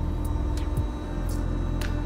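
A horn relay clicking about twice a second as it is switched on and off; it is still working. Background music plays underneath.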